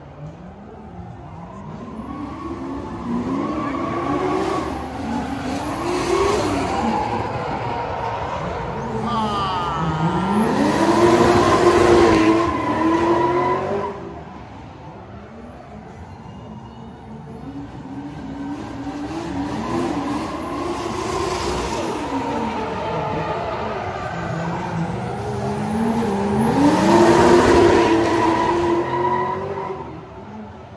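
Two high-powered cars drifting past one after the other, their engines revving hard up and down with tyre squeal. Each builds to a loud peak as it passes, about twelve seconds in and again near the end.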